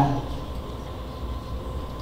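A pause in amplified speech, filled by a steady low rumble of background noise in a large room.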